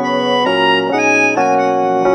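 Instrumental music: a melodica (melodion) holds a melody line over electric piano chords, the notes changing about every half second.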